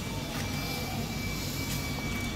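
Steady low rumble of background noise with a faint, steady high-pitched tone over it; no single event stands out.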